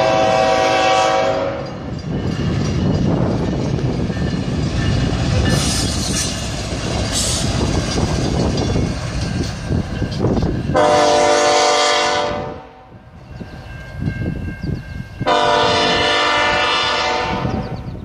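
Horn of a CN ES44DC diesel locomotive sounding for a grade crossing: a blast that ends about a second and a half in, then two long blasts near the end. Between them the locomotive's engine and wheels on the rails make a steady low rumble as it approaches.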